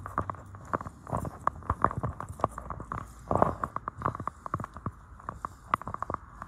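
Footsteps on a paved path with the phone handled while walking: a run of short, irregular clicks and knocks, several a second.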